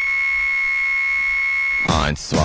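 A steady, high-pitched electronic beep tone, held without change and cutting off suddenly just before the end.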